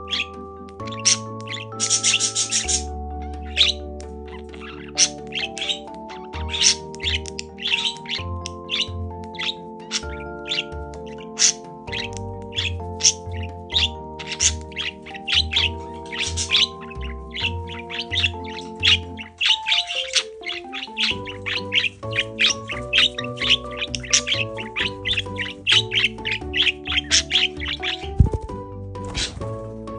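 A budgerigar chirping in quick short calls, several a second, as it displays in breeding condition. Background music with held notes and a bass line plays underneath.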